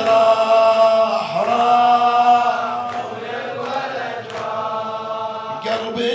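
Male chanting of an Arabic Shia lament (latmiyya), melodic and unaccompanied, with long held notes that bend slowly in pitch. The phrase is loudest in the first half, falls away after about three seconds, and a new line begins just before the end.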